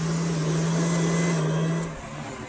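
Two electric box fans running at full speed: a steady rush of air with a low, steady hum that drops away near the end.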